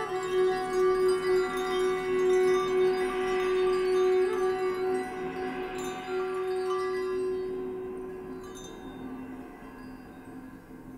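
Hanging chimes and small bells struck with a mallet, ringing over a long held note, in quiet free jazz percussion playing. The ringing fades away over the last few seconds.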